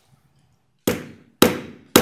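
A gavel struck three times, about half a second apart, each blow sharp with a short ring: the signal that the meeting is being called to order.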